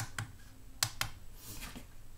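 Small push buttons on a digital microscope's control panel clicking as the menu is stepped through: about four short clicks in two quick pairs.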